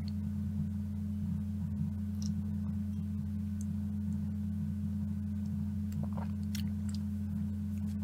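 Steady low electrical-sounding hum with no change in pitch or level, and a few faint short soft sounds around six seconds in.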